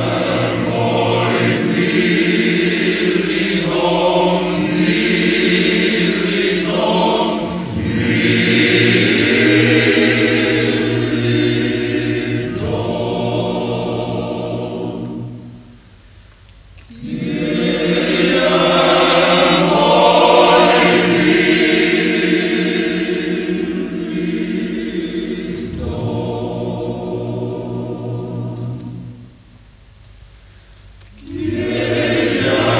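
Male choir singing a traditional Slovenian song in sustained, harmonised phrases. The singing breaks for about a second halfway through, resumes, and pauses again near the end.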